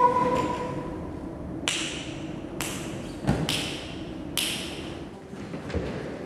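A held sung note fading out, then about five sharp taps or knocks at uneven intervals, each ringing briefly in a large, bare, echoing room.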